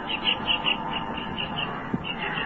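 A pause in the speech, filled with the background noise of an old recording: a steady hiss with a faint steady tone. A faint high chirp repeats about six times a second throughout, and there is one short click near the end.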